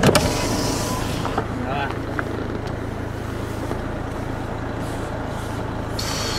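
Car engine idling steadily, heard from inside the cabin, with a sharp click right at the start.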